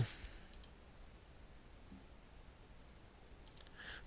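Near-silent room tone with a faint hiss, and a few faint clicks near the end.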